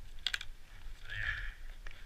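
A quick cluster of sharp plastic clicks from ski boot buckles being worked by gloved hands, then a short rustle and one more click near the end.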